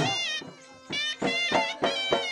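Folk dance music: a dhol struck in sharp beats under a high, wavering, nasal melody line. The melody drops out briefly about half a second in, then comes back.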